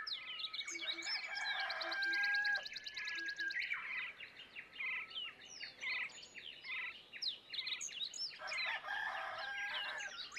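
Dawn chorus: several birds calling over one another, with quick chirps, clear whistles that slide in pitch, and rapid trills.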